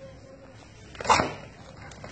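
A dog barking once, a single short loud bark about a second in.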